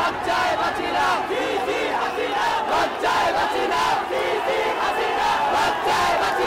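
A large crowd of many voices shouting at once, loud and continuous, with overlapping yells and calls.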